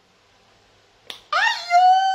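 About a second in, a single sharp click. Then a woman's voice slides up into one long, high held note, a drawn-out vocal exclamation.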